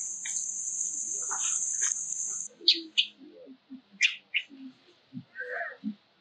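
A steady high-pitched buzz that stops suddenly about two and a half seconds in, followed by a scatter of short, sharp high chirps and small soft sounds.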